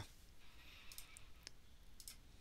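Near silence: faint room tone with a few soft clicks about a second in.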